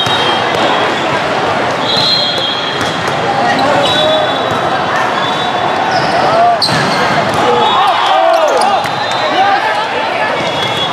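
Echoing din of a volleyball tournament hall: a crowd of voices, balls being hit and bouncing across many courts, and whistles from nearby courts, with one sharp ball hit about six and a half seconds in and shoe squeaks after it.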